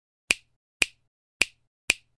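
Four sharp clicks about half a second apart, each dying away quickly: a sound effect on an animated intro title.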